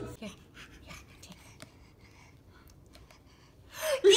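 Quiet room with a baby's soft breathing and a few faint clicks. Near the end a rush of noise swells up.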